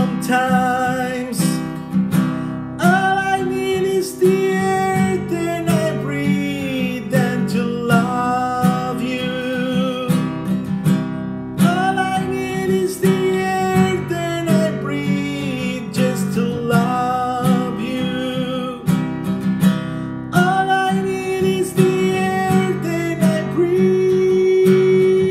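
A man singing a slow ballad while strumming a nylon-string classical guitar in a steady rhythm.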